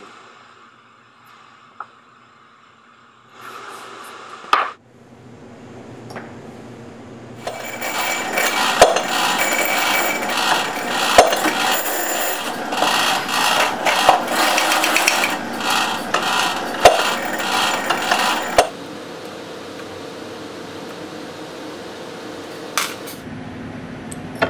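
Metal clatter at a bench drill press and arbor press while stainless steel threaded inserts are assembled. It starts several seconds in with dense clinking and scraping and sharp metal clicks for about ten seconds, then gives way to a steady machine hum.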